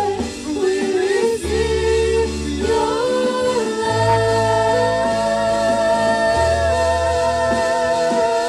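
Worship band singing a slow praise song, several voices holding long notes over sustained low bass notes that change every second or two.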